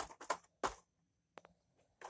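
Quiet typing: a handful of short, separate taps spread unevenly over two seconds.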